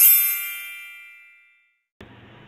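A single bright bell-like ding, a transition chime sound effect, ringing with several high tones that fade out over about a second and a half.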